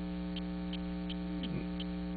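Steady electrical mains hum, a stack of even unchanging tones, with faint regular ticks about three times a second.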